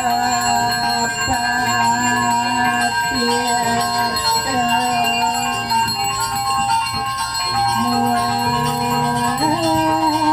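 Continuous ringing of a ritual hand bell, the Balinese priest's genta, with a slow melody of long held notes that slide from one note to the next.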